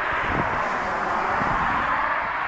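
Water pouring steadily into a pet water dish to top it off, a continuous splashing hiss.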